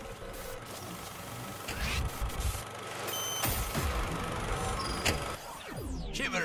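Atmospheric sound-effect intro to an electronic music track: a hissing, rumbling build-up over a low drone that grows steadily louder, with a short high beep about three seconds in and sliding, falling tones near the end.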